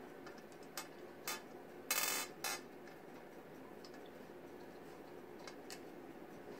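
M&M's candies tapped and slid into a line on a glass tabletop: a few light clicks, with a short scrape about two seconds in.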